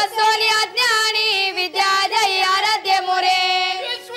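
A single high voice singing a folk devotional phrase, with ornamented bends in pitch and long held notes, and little or no accompaniment.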